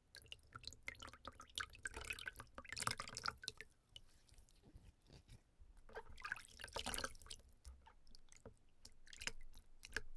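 Hands scooping and swishing water in a plastic basin, with water splashing and dripping back in from cupped hands. It comes in two busier spells, about two to three seconds in and again around six to seven seconds, with a few lighter splashes near the end.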